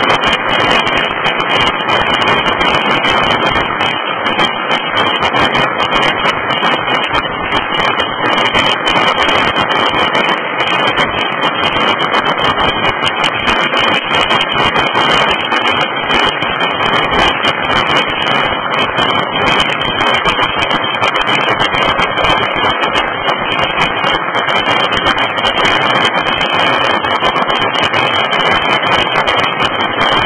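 Many firecrackers going off at once across the city, an unbroken dense crackle that blends into one loud, steady wash of noise.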